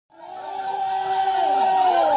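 A live band's held notes ring on while a crowd cheers and whoops, fading in from silence at the very start.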